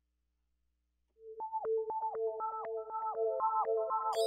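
Omnisphere synth patch 'OctaGlide Sine', a BPM pad from the Omniverse library, starting after about a second of silence. It plays rhythmic pulsing sine tones at about four pulses a second, each note sliding down in pitch, with more notes stacking up as it goes.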